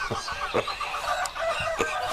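Chickens clucking with short repeated calls, with two sharp knocks, one about half a second in and one near the end.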